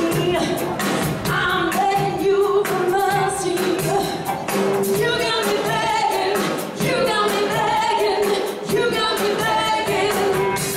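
A live band playing beach music with a lead vocal over a steady drumbeat.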